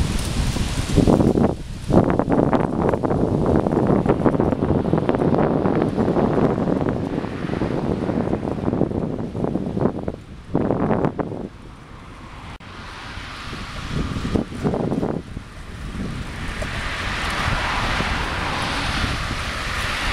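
Wind buffeting the microphone of a camera moving along on a bicycle, in loud uneven gusts, with road traffic running alongside.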